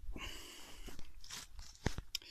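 Crunching and rustling of footsteps through ferns and undergrowth, with two sharp clicks in the second half.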